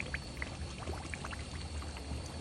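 Crushed dried chili flakes frying in hot oil in a pan: a soft, steady sizzle dotted with small crackles and pops.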